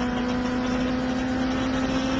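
Koenigsegg CCR's supercharged V8 running flat out at very high speed, its note holding one steady pitch over a rush of wind and road noise.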